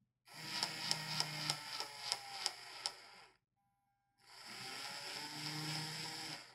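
Small yellow hobby DC gear motor with a plastic gearbox whirring quietly, with a few clicks. It winds down and stops about three seconds in, then starts again and grows louder. It is being driven through a speed ramp from full reverse, down to zero, then up towards full forward.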